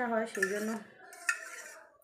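A woman's voice for about the first second, then a single sharp clink of a spoon against a bowl a little past the middle.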